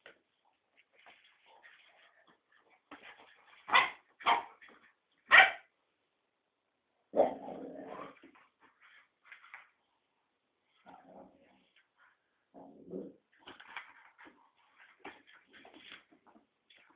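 Dogs play-fighting: three short, sharp yips about four to five and a half seconds in, then a lower, longer vocal sound about seven seconds in, with softer whimpering and yipping later on.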